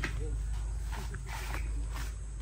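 Faint voices in the background over a low, steady rumble, with a few soft clicks.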